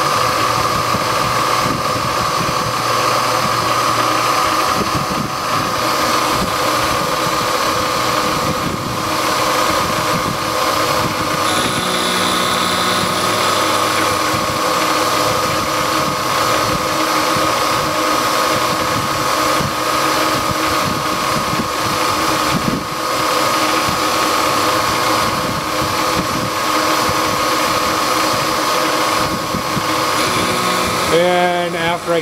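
CNC milling machine running a program, its spindle and end mill giving a steady high whine over a constant machine noise as the tool works around a connecting rod.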